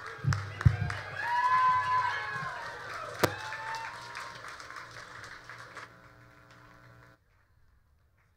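Small audience applauding and cheering, with a couple of low thumps near the start and one sharp knock a few seconds in. The sound fades and cuts off suddenly near the end.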